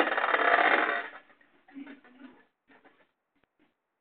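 Beyblade spinning tops clashing and grinding against each other and the stadium bowl: a loud, fast rattle for about a second, then only faint scattered scrapes and ticks as they spin on.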